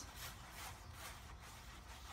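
Paintbrush swirling thinned, soupy paint around a plate: a faint, irregular soft scraping and swishing.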